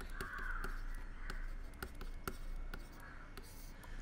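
A few short, harsh, faint cawing calls of a bird in the background, with light ticks of a stylus writing on a tablet and a steady low electrical hum.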